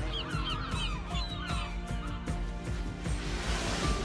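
A flock of gulls calling, many short cries overlapping through the first two seconds, with a steady music bed underneath.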